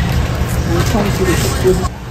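Low, steady rumble of a wire shopping cart rolling over a concrete floor, with faint voices in the background; the rumble cuts off abruptly near the end.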